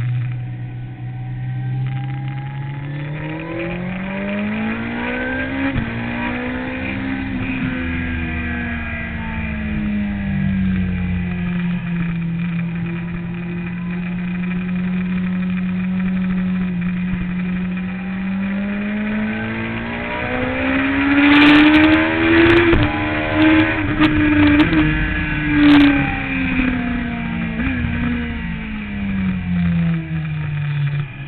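Sport motorcycle engine heard from an onboard camera, revving up, then holding a steady speed, then revving higher again before easing off near the end. Gusty wind noise hits the microphone at the fastest stretch.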